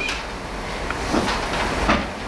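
Paper rustling and handling noise over a steady low room rumble, with a short knock near the end.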